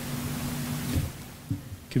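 Room tone of a lecture hall picked up through a microphone, with a faint steady hum and a few low thumps. A man's voice starts speaking just before the end.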